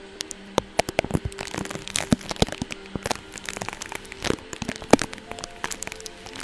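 Close-miked crackling and crinkling of tape stuck on a microphone, rubbed and tapped by fingertips and a makeup brush: a rapid, irregular run of crisp crackles.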